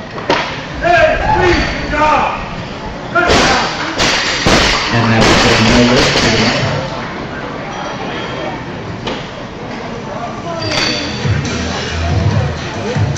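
A loaded barbell with bumper plates is dropped from overhead onto the lifting platform after a clean and jerk: a heavy thump about three seconds in, followed by two smaller bounces. Spectators' shouts and cheers are heard around it.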